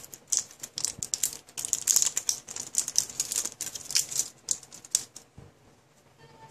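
Clear plastic wrapper being crinkled and peeled off a roll of stickers by hand: a rapid, irregular run of small crackles that stops about five seconds in.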